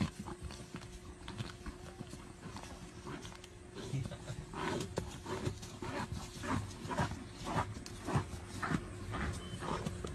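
An animal calling over and over, about twice a second, starting about four seconds in, over a steady low hum.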